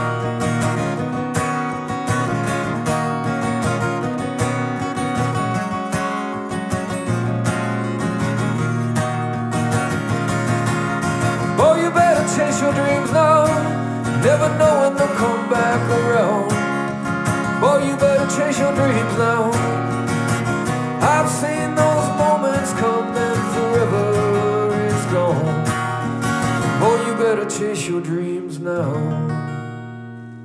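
Acoustic guitar strummed in a steady rhythm as a solo live performance. From about twelve seconds in a wordless melody line bends over the chords. Near the end the song closes, its last chord ringing out.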